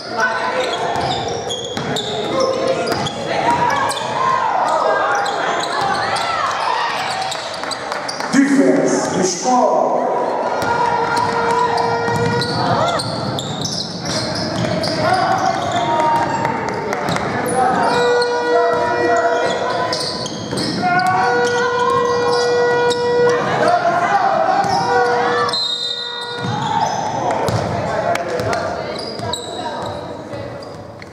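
Basketball game sound in a large gym: a ball bouncing on hardwood and echoing voices of players and spectators. In the second half come several long held notes.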